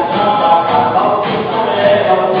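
Live praise music: a band led by acoustic guitar playing while several voices sing together.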